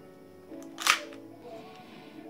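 Cybergun FNX-45 airsoft pistol's slide worked by hand, closing with one sharp, loud click about a second in after a fainter click just before, over background music.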